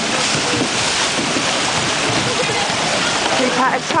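Many canoe paddles splashing and churning the water as a pack of open canoes is paddled hard, a steady rushing wash of water. Faint shouts from other people are heard over it.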